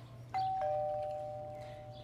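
Two-note ding-dong chime: a higher note, then a lower one just after, both ringing on and slowly fading.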